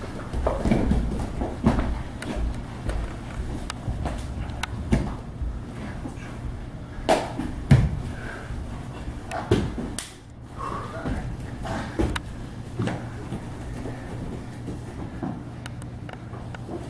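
Scuffs and thumps of two people grappling on a gym mat: irregular knocks of bare feet, knees and bodies on the mat, the loudest about eight seconds in, over a steady low hum.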